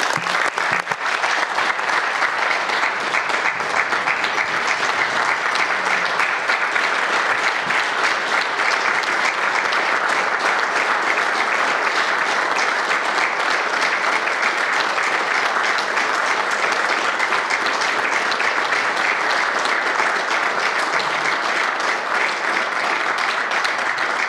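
Sustained applause from a chamber full of people clapping, steady throughout.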